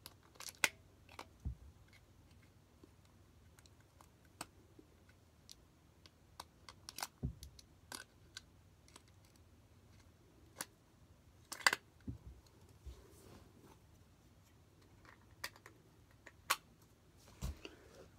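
Scattered small clicks and taps of hands working on a small toy, with a louder click about twelve seconds in.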